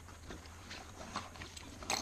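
Faint rustling and light clicks of hand tools and nylon fabric being handled in the inner pouch of a Milwaukee jobsite tool backpack, with a sharper click near the end.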